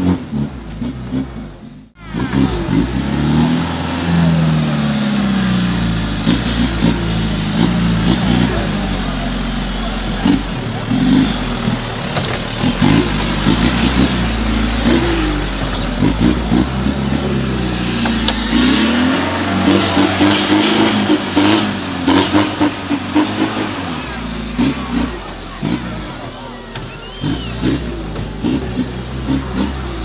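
Off-road trial buggy's engine revving up and down in repeated bursts as it climbs over dirt obstacles, with crowd voices behind it. The sound cuts out briefly about two seconds in.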